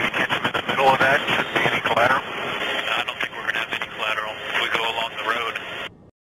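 A man's voice over a radio link, thin and narrow-band with the words unclear, over a steady hiss with scattered clicks.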